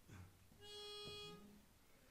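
A pitch pipe sounding one steady, reedy note for about a second, giving the starting pitch before the barbershop chorus sings.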